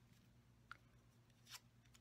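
Near silence: room tone with a low steady hum and two faint, brief ticks, about a second apart.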